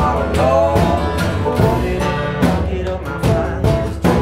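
Band playing an instrumental passage: strummed acoustic guitar and other plucked strings over a steady beat.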